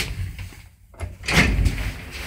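The inner car doors of an old ZUD passenger lift being pulled shut: a short knock at the start, then a louder metal clatter and thud about one and a half seconds in as the doors close.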